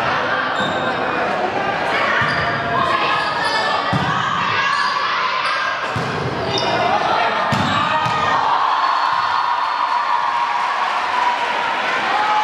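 A volleyball struck again and again during a rally, about five hits roughly two seconds apart that echo in a large gym hall. Steady shouting and calling from players and spectators runs under the hits.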